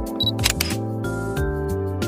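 Background music, overlaid with a camera sound effect: a short high autofocus beep, then a shutter click about half a second in.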